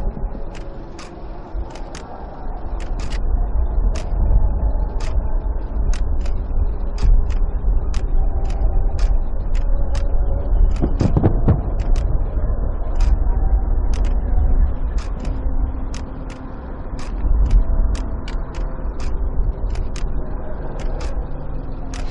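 Outdoor ambience: a steady low rumble with sharp ticks repeating about twice a second, and faint voices in the background.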